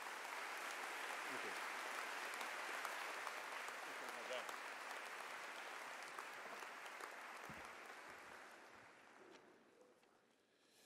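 Audience applause, steady for most of the stretch and slowly dying away near the end.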